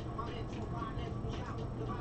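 Faint background talk over a steady low hum.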